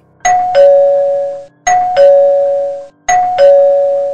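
Two-tone ding-dong doorbell chime rung three times in quick succession, each ring a higher note followed by a lower one that fades out.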